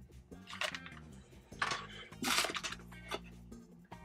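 Plastic packaging crinkling and rustling in several short bursts as it is handled, over quiet background music.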